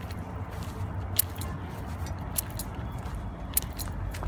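Handling noise on a handheld phone microphone as it is moved about: a steady low rumble with a few scattered sharp clicks and crackles.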